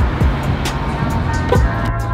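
Background music with a steady beat: held bass notes under regular percussion hits.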